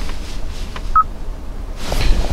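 A single short electronic beep from the Hyundai Palisade's infotainment touchscreen about a second in, the confirmation tone of a screen tap, over a low steady cabin hum.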